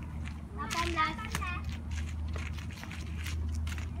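Children's badminton rally: a few light clicks of rackets hitting the shuttlecock and footsteps, with a brief child's voice about a second in and a steady low hum underneath.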